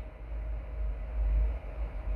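Low rumbling background noise with uneven loudness and a faint steady hum.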